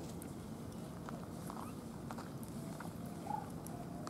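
Faint rustling and small clicks of long-tailed macaques moving on dry leaf litter over a steady low background rumble, with one short squeak a little over three seconds in.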